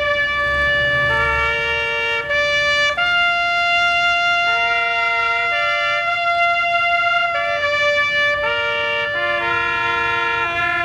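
A brass instrument plays a slow call of long held notes, stepping between a few pitches about once a second, often with two notes sounding together.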